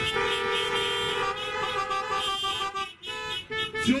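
Car horns honking together in one long blast of nearly three seconds, then a couple of shorter honks.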